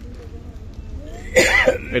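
A low steady room hum, then about a second and a half in, a short, loud burst from a man's voice just before he starts speaking.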